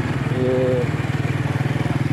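Motorcycle engine running steadily while riding, with a fast, even firing pulse.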